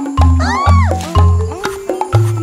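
Cartoon background music with short, deep bass notes about twice a second under a melody. About halfway through, a voice-like sound swoops up and then down.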